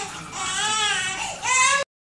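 A young child crying in two long rising-and-falling wails, the second shorter. The sound cuts off abruptly near the end.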